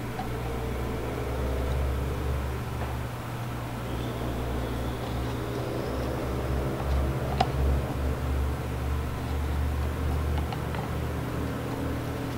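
Steady low background hum with faint handling rustle and an occasional light click, the clearest about seven seconds in, as wooden clothespins are clipped onto the rim of a cardboard box.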